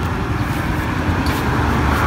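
Steady outdoor background noise with a low rumble, the kind made by road traffic nearby.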